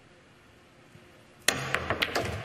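A pool cue strikes the cue ball sharply about a second and a half in, followed by a few quick clicks as the balls hit each other.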